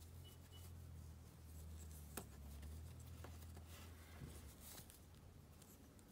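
Faint rustling and rubbing of a cloth robe being slid off a plastic action figure by hand, with a few small plastic ticks, over a low steady hum.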